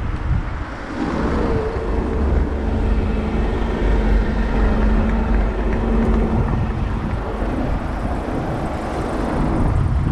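City road traffic heard from a bicycle: a motor vehicle's engine running close by, giving a steady hum from about a second in, over a constant low rumble.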